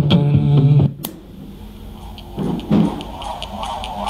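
Pop music playing from a speaker dock stops about a second in, with a brief click, as the track is skipped. After a short quiet gap the next song starts softly with light rhythmic ticks.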